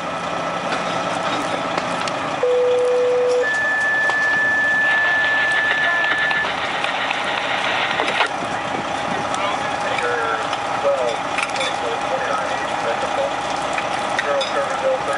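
Fire engines running at a fire scene, with a two-tone radio page sounding a few seconds in: a lower tone held about a second, then a higher tone held about three seconds. Faint voices come and go over the engine noise.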